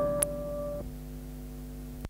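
The closing notes of a guitar piece ringing out and fading, with no new notes played. A higher held note drops out about a second in, and the remaining lower notes stop abruptly at the end as the recording cuts to silence.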